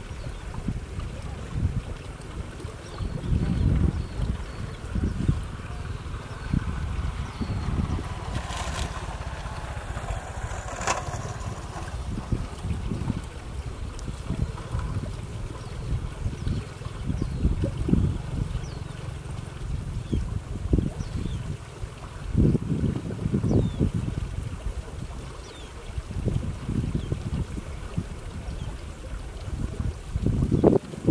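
Wind buffeting the microphone: an irregular low rumble that surges and fades in gusts, with faint high chirps now and then.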